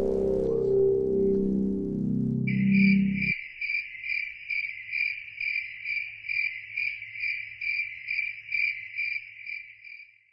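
The backing music plays and stops abruptly about three seconds in. Over it, and then alone, a cricket chirps in a steady, even rhythm of about two to three chirps a second.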